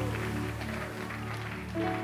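Soft background music: an electric keyboard holding sustained chords.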